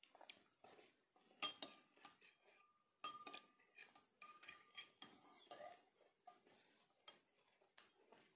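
A metal spoon clinking faintly against a glass as it scoops out the milk drink: a few light clinks, one of them leaving a brief ringing tone.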